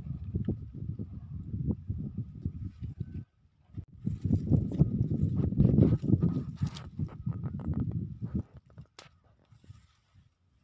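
Close rustling, crackling and handling knocks as a hand works through strawberry leaves and dry pine-straw mulch to pick the berries. There is a brief pause just after three seconds, and the sound is loudest in the middle and dies away near the end.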